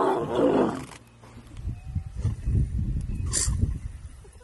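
Lionesses growling at a porcupine: a loud, rough snarl through the first second, then low rumbling growls. A short hiss comes near the end.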